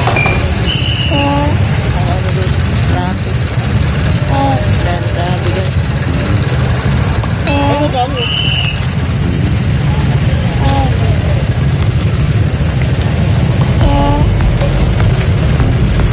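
A motor vehicle engine running steadily, a low rumble throughout, with people's voices in brief snatches over it.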